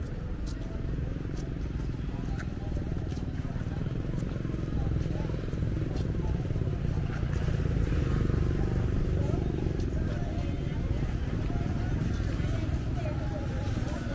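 Seafront street ambience: a steady rumble of traffic and motorbike engines, with the voices of passers-by talking, most clearly in the second half.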